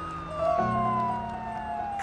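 Fire engine siren wailing, its pitch slowly falling after a peak, over soft background music whose held notes come in about half a second in.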